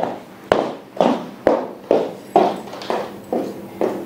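Footsteps of someone walking briskly on a hard floor in hard-soled shoes: sharp clicking steps, about two a second.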